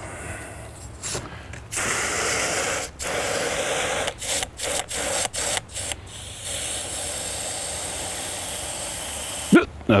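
Water spraying from a garden hose nozzle into a plastic jug, filling it to the one-gallon mark. The spray cuts off and restarts several times in short bursts over the first few seconds, then runs steadily and a little softer.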